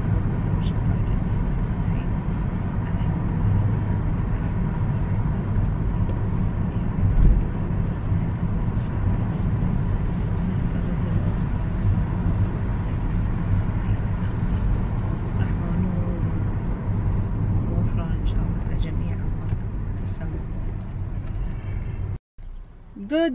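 Steady low road and engine rumble inside a moving car's cabin, with one louder low bump about seven seconds in. A woman's voice murmurs faintly underneath.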